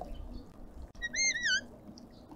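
Red-winged starling whistling a short call about a second in: two quick, clear whistled notes that swoop up and down in pitch.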